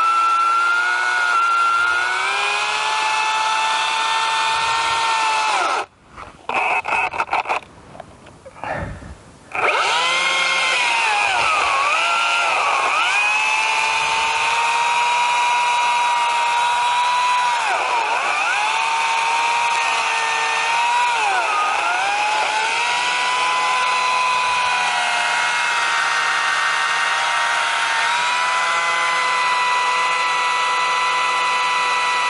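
Two-stroke chainsaw running at high revs while cutting into a thick pine trunk. Its pitch sags and dips several times as the chain bogs down under load, showing the saw struggling to cut the pine. About six seconds in, the sound drops away for a few seconds, broken by short bursts, before the saw runs at full again.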